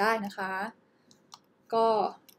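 A couple of faint clicks from a computer mouse, about a quarter second apart, in a short pause between a woman's speech.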